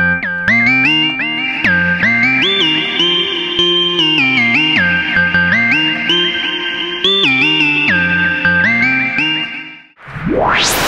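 Softube Model 82, a circuit-modelled emulation of the Roland SH-101 monosynth, playing a single-note lead line on its 'Tech Slide' preset, a 90s house-style lead. The notes slide smoothly up and down in pitch between steps, and the line stops just before the end.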